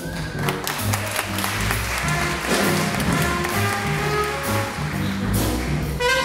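Live hard-bop jazz band playing, with sharp drum and cymbal hits over upright bass, piano and horns.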